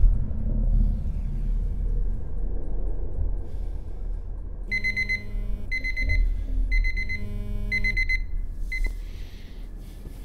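A low rumbling drone, then, about five seconds in, an electronic alarm beeping: four quick groups of rapid high beeps, with a short fifth group about a second later.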